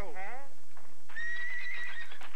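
Cartoon horse whinnying with a shaky, falling pitch, then a steady high-pitched tone held for about a second.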